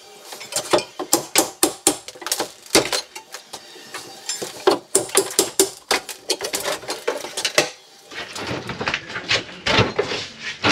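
Ceramic shower tile being knocked loose and broken with a hand tool during bathroom demolition: irregular sharp knocks and clinks of tile pieces, which stop about three-quarters of the way through.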